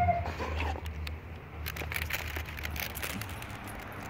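A German Shepherd close to the microphone gives a short whine at the start and a fainter falling one just after. This is followed by scattered light clicks and rustling.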